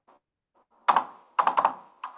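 Computer keyboard typing: a few separate sharp keystrokes, one about halfway through and then a quick run of three.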